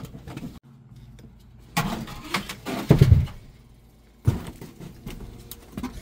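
Irregular clatter and knocks of sheet metal and an air-handler coil being handled, with a loud bump about three seconds in and another sharp knock a little after four seconds.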